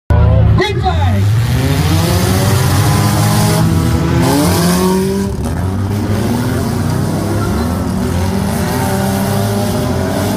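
Several bump-and-run race cars' engines running and revving together on a dirt track, the overlapping pitches rising and falling throughout.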